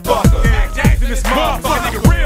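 Hip hop track with a rapper's voice over a beat of deep bass kicks that drop in pitch.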